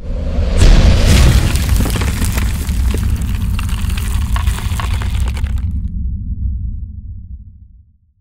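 Logo-reveal sound effect: a deep boom with crackling, shattering debris. The crackle cuts off about six seconds in and a low rumble fades away.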